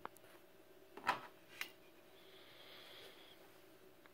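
Faint handling noises of a plastic blister-packed tube of JB Weld Plastic Bonder being picked up and set out: a light click, a short rustle about a second in, then another click.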